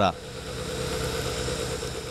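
Small engine running steadily with a fast, even low throb and a steady hum.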